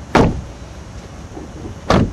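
Two sharp thumps, one just after the start and one near the end, over a faint steady background.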